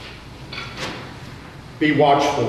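Two soft rustling swishes early on, then a man's voice begins loudly just before the end.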